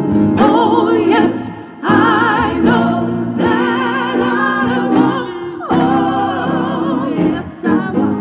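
A woman sings a gospel-style inspirational song with a wide vibrato, backed by grand piano and electric bass. Her sung phrases break briefly for breath about two seconds in and again near the end.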